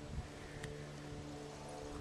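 Steady hum of a honeybee colony at work inside a top bar hive, with a couple of faint clicks.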